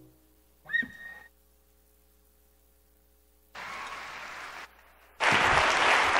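Audience applause after a live acoustic song ends. About a second in comes a single short rising whistle-like call. A moment of scattered clapping follows, then full applause breaks out loudly about five seconds in.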